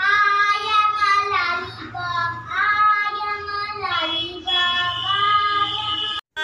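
A young girl singing alone, holding long notes in about three phrases with short breaks between them.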